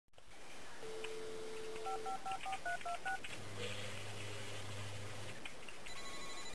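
Touch-tone telephone: a dial tone for about a second, then seven quick keypad beeps as a number is dialled. A low steady hum follows for about two seconds, all fairly faint over a background hiss.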